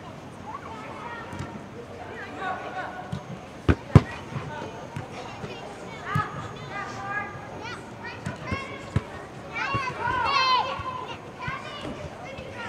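Players' voices calling out across an indoor soccer field, with sharp thuds of a soccer ball being kicked; the loudest two kicks come close together about four seconds in, and the calls grow loudest near the end.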